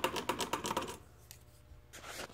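Quick run of small metallic clicks and rattles as flexible armored (BX) cable is handled and flexed at a boiler's electrical control box, lasting about a second.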